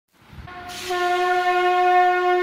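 A conch shell (shankha) blown: one long steady note that swells up out of silence over the first second, with a breathy rush as it starts.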